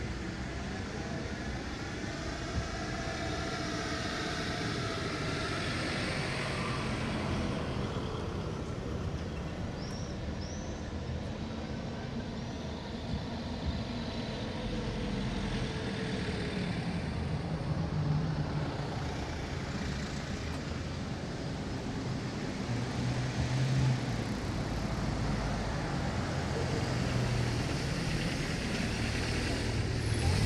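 City street ambience: a steady background of road traffic with scattered voices of passers-by. The traffic rumble grows somewhat louder in the last third.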